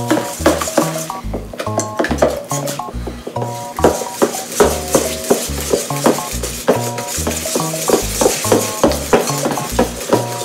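A wire whisk beating batter in a stainless steel bowl: quick, repeated scraping and clinking of metal on metal. Background music with a repeating bass line plays underneath.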